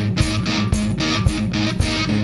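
Electric guitar strummed in a steady rock-and-roll rhythm, about four strokes a second.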